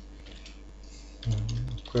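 Faint computer-keyboard typing: a few soft, sparse keystrokes.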